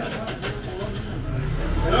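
A low rumble that swells toward the end, with a few light clicks near the start.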